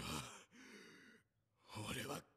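A faint, breathy male voice from an anime episode, sighing and beginning a halting line, "I...". There is a short silence, then another breathy syllable near the end.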